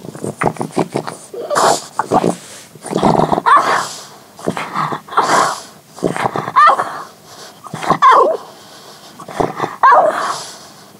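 French bulldog sniffing in repeated bursts, with several short, high squeaks that bend in pitch between them: a dog begging.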